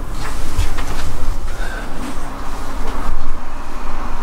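Steady low rumble of road traffic on the street below, muffled through the window glass.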